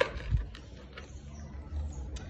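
A paperback picture book being handled and its page turned: a short sharp sound at the start, a soft thump just after, then faint paper rustles over a steady low outdoor rumble.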